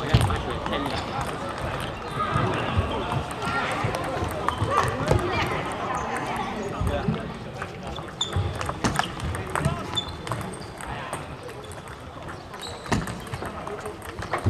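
Table tennis ball clicking off bats and the table during play, a series of short sharp knocks, over background voices in the hall.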